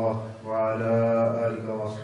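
A man's voice chanting "Allah" in dhikr: a short phrase, then about half a second in one long drawn-out note held for over a second.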